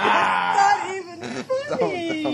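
A person's voice in a loud, drawn-out wailing cry lasting about a second, followed by shorter vocal sounds near the end.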